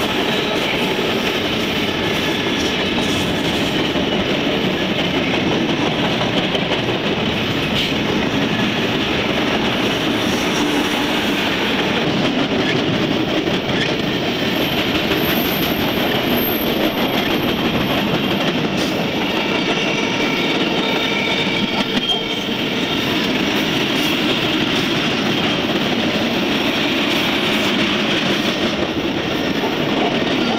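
Freight train cars rolling past close by, a steady rumble and clatter of steel wheels on the rails. A brief high wheel squeal comes about two-thirds of the way through.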